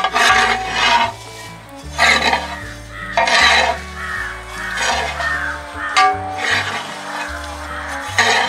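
Background music with a steady bass line, over a metal spoon scraping and stirring dry-roasted grated coconut in a metal pan in strokes about every one to one and a half seconds.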